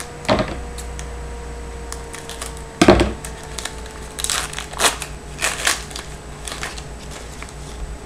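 Trading-card pack wrapper crinkling and tearing as it is opened by hand: a series of short crackles, the loudest about three seconds in, over a faint steady hum.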